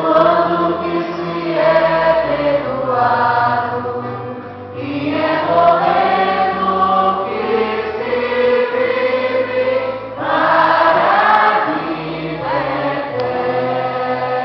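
A choir singing a hymn in long held notes over a steady instrumental bass accompaniment, with a brief lull about four seconds in and a louder passage near the end.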